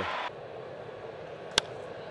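Low, steady ballpark crowd ambience from a TV broadcast, with a single sharp crack of a bat hitting a pitched fastball about one and a half seconds in.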